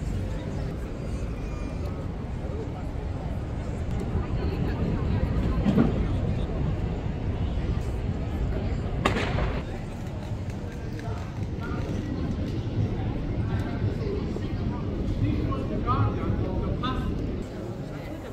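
Busy city street ambience: passers-by talking in the background over a steady low rumble, with a single sharp clack about nine seconds in.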